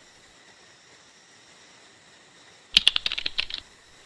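Near silence, then about three quarters of the way in a quick run of sharp clicks lasting under a second.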